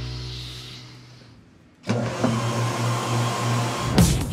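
A held chord from the trailer's music fades out over the first two seconds. Then a low hum, pulsing slightly and carrying a hiss, starts abruptly and keeps going.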